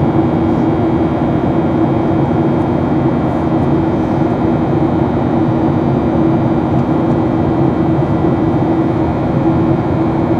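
Boeing 737-800's CFM56-7B turbofan engines heard from inside the cabin over the wing in flight: a loud, steady drone with a low hum.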